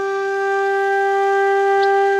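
Background music: one long, steady note held on a flute.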